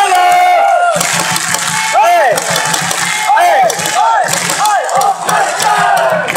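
Football supporters in a stadium stand chanting and shouting together. Several loud voices close by rise and fall in pitch over the dense noise of the crowd.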